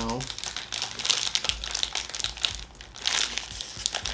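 Silver tea-bag pouch crinkling and crackling in the hands in quick, dense bursts as it is pulled at to tear it open; it is not giving way easily.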